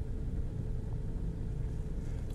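A steady low background rumble with a faint steady hum above it.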